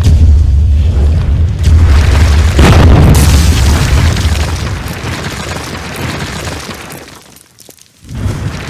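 Cinematic intro sound effects of a wall cracking and collapsing. A deep rumbling boom leads into a loud crash about two and a half seconds in, then a long rumbling tail fades out near the end.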